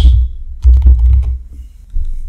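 Typing on a computer keyboard: a quick run of keystrokes, each click carrying a low thud, loudest in the first second and lighter near the end.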